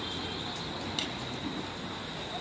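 Steady outdoor background noise with a faint, steady high whine and one sharp click about halfway through.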